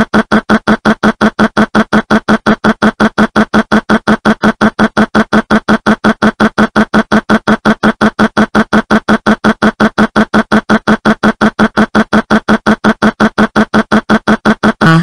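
One short pitched sound repeated over and over, evenly and rapidly at about six times a second, like a stuttering audio loop.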